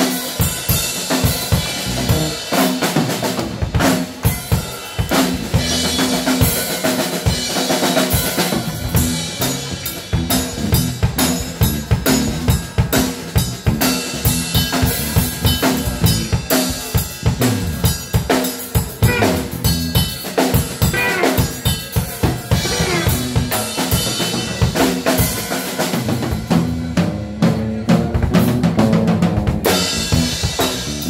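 Drum kit played live with sticks: fast, busy strokes on snare, toms and cymbals over the kick drum, with electric bass guitar notes sounding underneath.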